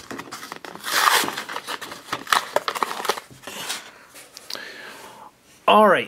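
Clear plastic toy packaging crinkling and tearing in the hands as a small pony figure is worked free. The rustling comes in spells with short pauses, loudest about a second in.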